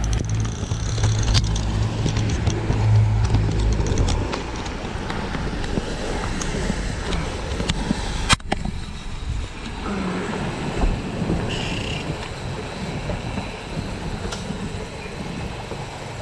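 Outboard-powered fishing boat under way, its engine, wake and wind making a steady rushing noise; a heavy low rumble drops away about four seconds in. A single sharp click comes about eight seconds in, with the camera being handled.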